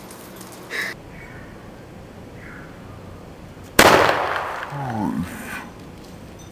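A homemade cap-gun-powder bomb goes off with one sharp, loud bang about four seconds in, and the bang dies away over a second or so. A brief voice-like cry that falls in pitch follows it.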